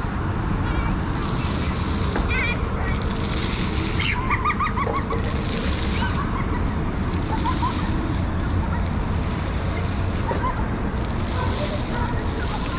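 Spray jets of a plaza splash fountain hissing and splashing onto the paving, the hiss swelling and fading every second or two. A few short, high children's voices are heard faintly.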